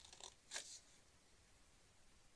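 Small scissors snipping through red cardstock: a few short, quiet cuts in the first second, the one just after half a second the loudest.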